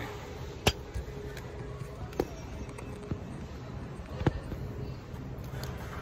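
Phone-handling noise: three sharp knocks spread over about four seconds as the phone is moved and set in place. Under them runs a steady low hum of supermarket background.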